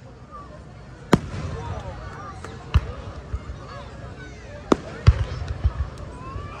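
Aerial fireworks shells bursting overhead: four sharp bangs, one about a second in, one near three seconds, and two close together near the end, each trailed by a low rumble.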